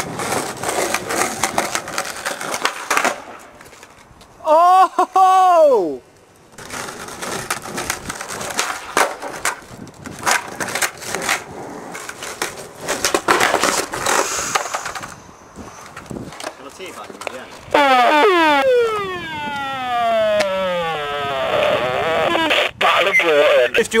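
Skateboard wheels rolling on concrete, with sharp clacks as the board is popped and lands during flat-ground tricks. A short, very loud tone rises and falls about five seconds in, and a long falling glide sounds near the end.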